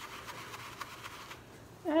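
Faint rubbing of a large paintbrush's bristles working acrylic paint on the palette, dying away after about a second and a half. A spoken word comes in near the end.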